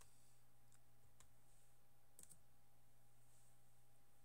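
Near silence with a faint steady hum, broken by faint clicks of a computer mouse and keys: two single clicks, then a quick double click just past halfway.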